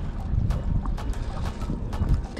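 Wind buffeting the microphone, an uneven low rumble that swells and dips.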